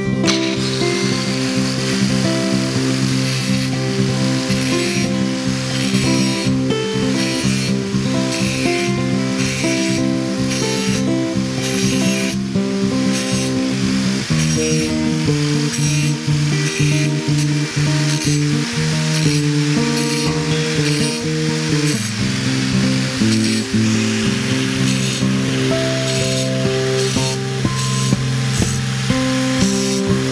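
Background music over an angle grinder cutting into a rusty steel knife blade, the grinding coming and going as the disc is touched to the steel.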